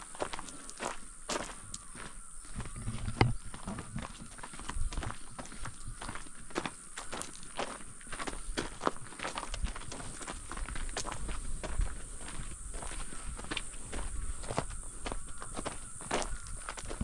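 Footsteps on a gravel trail at a steady walking pace, about two steps a second, over a faint steady high hiss.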